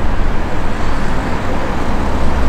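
Steady road traffic noise: an even roar of passing cars with a strong low rumble.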